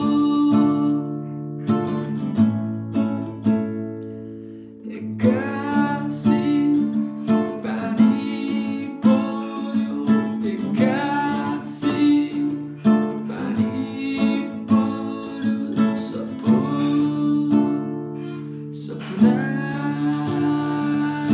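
A man singing a song while strumming a nylon-string classical guitar with a capo. The playing dies down around four seconds in, then fresh strums start about a second later.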